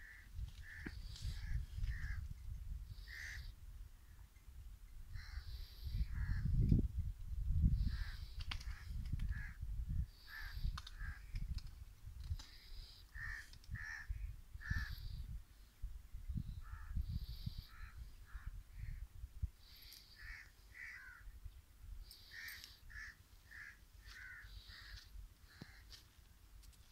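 Birds calling over and over in short, separate calls, over a low rumble that is loudest about six to eight seconds in.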